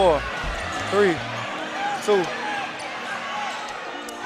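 Game sound from an arena basketball broadcast: a basketball dribbled on a hardwood court, with voices calling out briefly over steady background crowd noise.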